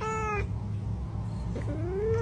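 A cat meowing twice: a short meow right at the start, and a second meow that rises in pitch, beginning near the end. A steady low hum runs beneath.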